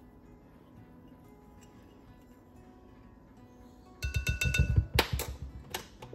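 Soft background guitar music, then about four seconds in a quick run of taps and knocks with a short bright ring: a plastic measuring spoon knocked against a glass measuring bowl to shake off the yeast, then set down on the counter.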